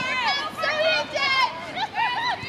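Women's voices shouting and yelling during a football match: several high-pitched calls in quick succession.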